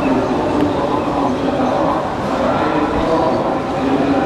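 Dense crowd noise: the voices of a huge crowd of demonstrators, blended into a loud, steady din.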